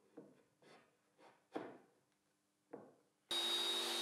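A plywood panel being set into the rebates of a wooden frame: a few light knocks and scrapes of wood on wood, the loudest about a second and a half in. Near the end a bench table saw is heard running steadily with a high whine.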